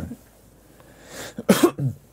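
A man coughs, a short cough of three quick hacks about a second and a half in.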